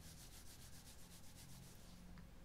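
Very faint, quick rubbing of hands on the upper arms in an even rhythm, a mimed shiver to warm up from the cold.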